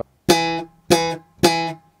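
Yamaha BB735A five-string electric bass through an Ampeg Portaflex amp: three short notes of the same pitch, about half a second apart, each with a sharp, bright attack, popped by the index finger pulling up the G string in slap technique.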